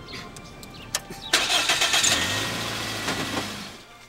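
A small Toyota car's engine being started. There is a click about a second in, then a brief loud stretch of cranking as the engine catches, and then a steady idle that drops away near the end.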